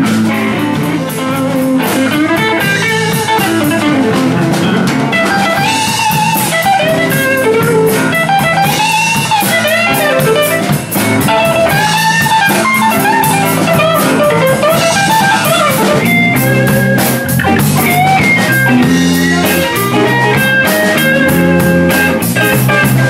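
Live blues band playing: an electric guitar lead with bent, sliding notes over a drum kit and bass.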